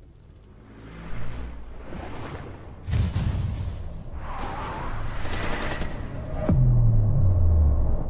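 Playback of a film-trailer mix: cinematic sound effects in quick succession (a car whooshing past, a wave crash, a fireball burst, car crashes) over a dark, rumbling score. A swell builds over the first few seconds, a bright noisy burst comes in the middle, and a sharp hit at about six and a half seconds gives way to loud low tones that fall in pitch.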